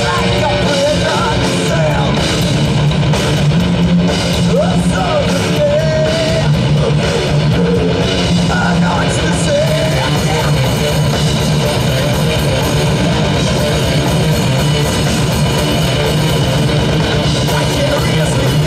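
Heavy metal band playing live: distorted electric guitars over a drum kit, loud and continuous.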